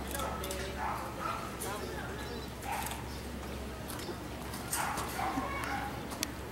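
Indistinct distant voices calling out in short bursts, about a second in, near three seconds and near five seconds, over a steady low hum.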